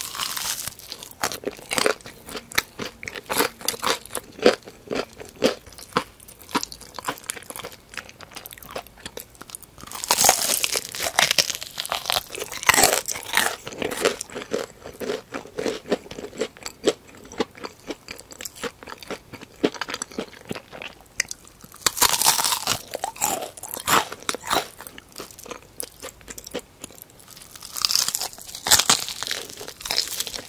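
Close-miked crunching and chewing of crispy battered fried chicken, steady crisp crackles throughout, with louder bursts of crunching from fresh bites about a third of the way in, about two-thirds in and near the end.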